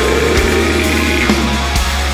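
Black metal music: an instrumental passage of heavily distorted electric guitar over bass, with no vocals.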